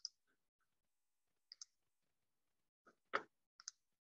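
A few faint computer mouse clicks over near silence, the loudest about three seconds in, followed by a quick pair near the end.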